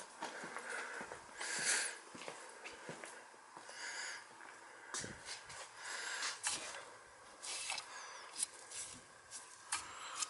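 A dog whimpering faintly a few times, in short high whines, with scattered light clicks and knocks in the second half.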